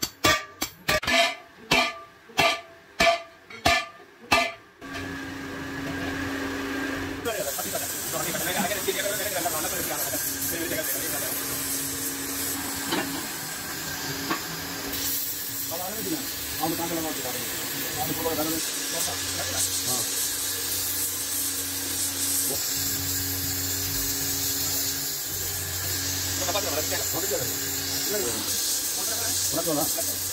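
A run of sharp metallic strikes, about two a second, ringing on a large sheet-metal cooking pot (degh). Then a steady hiss from a gas welding torch as it welds the pot's rim with a filler rod, with a low hum under it.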